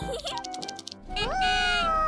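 Background music, with a high, drawn-out vocal sound about a second in that rises and then slowly falls in pitch.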